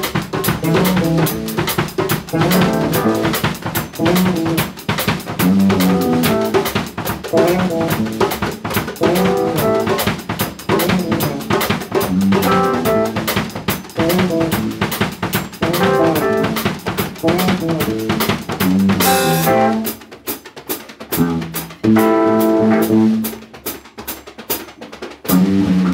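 A band playing funk-rock: drums and percussion keep a busy, fast rhythm under bass and pitched instruments. About 19 seconds in, the drums drop out, leaving sparse notes and then held chords near the end.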